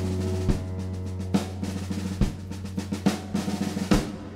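Live band playing an instrumental passage: a held low bass note and sustained chord under drum-kit hits on snare and bass drum, the strikes coming closer together like a fill and ending in a loud hit near the end.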